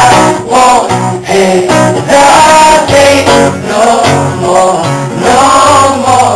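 Live pop song: a male voice singing over a strummed acoustic guitar.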